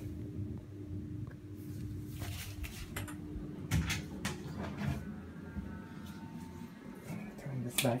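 Small electric clip fan running with a steady low hum, with several short knocks and clicks of handling scattered through it.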